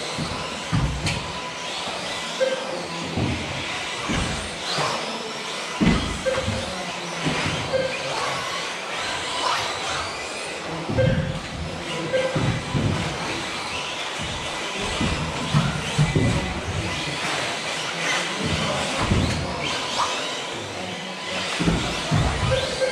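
Electric 1/10 scale 2WD off-road RC buggies racing on an indoor astroturf track: motor whines rising and falling as the cars accelerate and brake, with scattered thumps from landings and knocks. Short beeps recur every couple of seconds.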